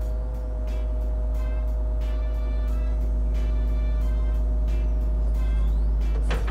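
Hitachi Zaxis 210 hydraulic excavator's diesel engine running with a steady low rumble and hydraulic whine as it lowers its long folding arm from the trailer. Background music with a steady beat plays over it.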